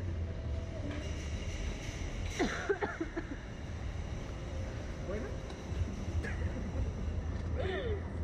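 Women's voices in short bursts of laughter and chatter, loudest about two and a half seconds in and again near the end, over a steady low rumble.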